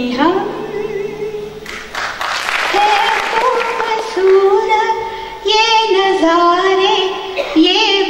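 Elderly woman singing solo into a stage microphone, with long held notes and wavering melodic ornaments between short gliding phrases. A brief rush of noise comes about two seconds in.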